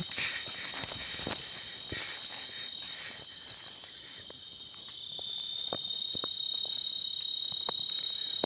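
A chorus of night insects with a steady, high-pitched trill that grows louder about five seconds in. Scattered short clicks and rustles come from hikers moving through grass and brush.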